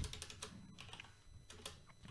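Faint computer keyboard typing: a run of quick, irregular keystrokes.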